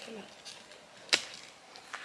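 A single sharp click about a second in, over faint outdoor background.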